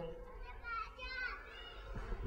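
Faint high-pitched voices in the background, heard in the pause between lines.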